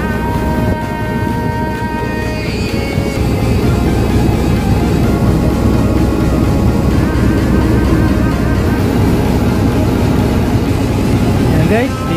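Airport apron passenger bus running with a steady low drone heard inside the cabin as it moves off, with a rising whine near the end as it picks up speed.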